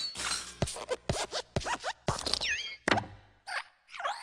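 A quick string of cartoon-style sound effects: about a dozen short plops and knocks packed into a few seconds, with a tone that slides down and back up about two and a half seconds in.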